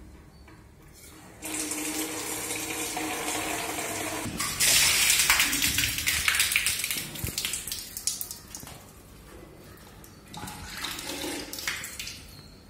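Water rushing out of an RO water plant's cartridge filter housing as it is opened for a filter change. It starts about a second and a half in, grows louder and hissier around the middle, and dies away after about eight seconds, with a brief smaller surge near the end.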